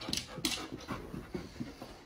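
A dog panting: quick, irregular breathy huffs several times a second.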